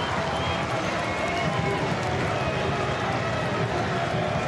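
Football crowd in the stands: a steady mix of many spectators' voices talking and calling out.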